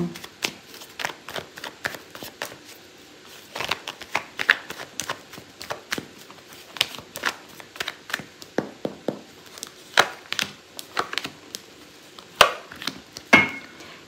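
A tarot deck being shuffled by hand, with irregular soft card slaps and clicks in short flurries. Near the end come a few sharper snaps as cards are dealt down onto the mat.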